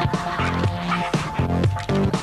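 Upbeat advert music with a quick rhythm of short, changing notes.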